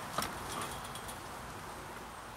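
A puppy giving one short, sharp yip about a fifth of a second in, then a fainter brief squeak, over a steady outdoor background.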